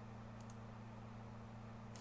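Faint clicks from computer use, a couple about half a second in, over a steady low electrical hum.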